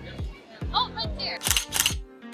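Electronic dance music with a steady kick-drum beat, a brief voice about a second in, then a camera shutter sound effect, two sharp clicks near the end.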